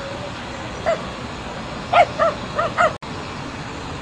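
A dog barking in short high yaps: one about a second in, then four in quick succession about two seconds in, over steady background noise.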